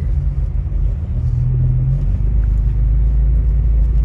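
Car engine and tyre rumble heard from inside the cabin while driving, a steady low drone; about two seconds in the engine note drops to a lower, steadier hum.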